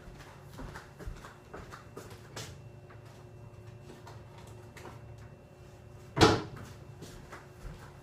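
A kitchen cupboard door shutting with a single knock about six seconds in, among faint clicks and rustling over a low steady hum.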